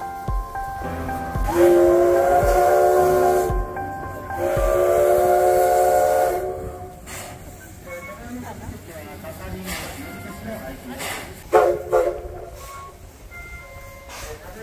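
Steam whistle of the C11 325 steam locomotive blown in two long blasts of about two seconds each. Each is a chord of several pitches that slides up as the whistle opens, with a hiss of steam. A brief, sharp toot comes near the end.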